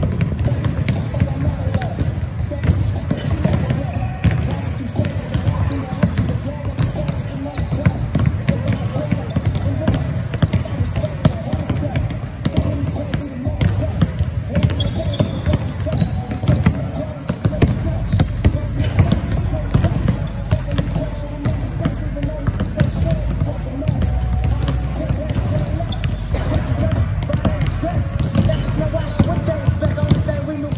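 Several basketballs being dribbled and bounced on a hardwood gym court at once: many overlapping bounces, with no steady rhythm.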